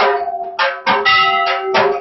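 Temple bells struck over and over during an aarti, about three strokes a second, each stroke ringing on with several steady tones.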